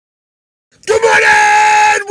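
A man's loud, long yell held on one high pitch, starting suddenly under a second in after silence.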